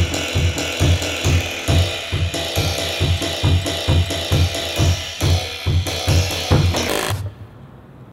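A tune played on a keyboard of spring doorstops, the sprung coils flicked to sound the notes over a steady beat of about two and a half thumps a second. The music stops suddenly about seven seconds in.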